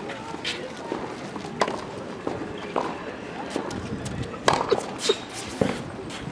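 Tennis practice on a hard court: irregular sharp pops of balls struck by rackets and bouncing off the court, with footsteps, about eight in all, the loudest about four and a half seconds in.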